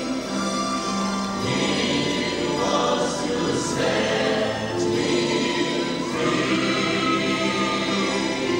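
A gospel praise team singing together with a live band behind them.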